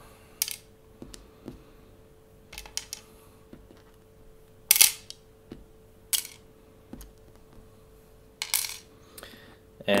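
Small gas-blowback pistol parts (screws, pins, O-rings) being dropped into a tray: a scattering of light clicks and clinks, the loudest about five seconds in, with a slightly longer rattle near the end. A faint steady hum runs underneath.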